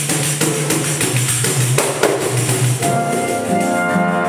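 Live choro ensemble playing: a busy, steady jingling pandeiro rhythm over a walking bass line, with held wind-instrument notes coming in near the end.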